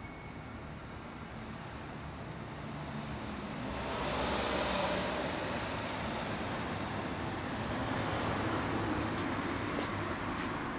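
A motor vehicle running, with a steady low hum that grows louder about four seconds in and then holds.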